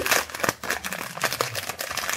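Small clear plastic bag crinkling and crackling in the hands as it is worked open, a quick irregular run of crackles.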